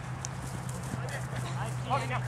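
Distant shouts and calls from players on the field, with a short louder shout near the end, over a steady low hum.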